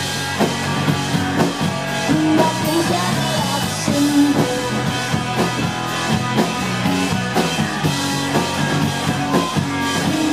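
Rock band playing live on two electric guitars, bass guitar and drum kit, with a steady beat of drum hits.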